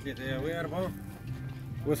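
People talking, with a steady low engine hum running underneath.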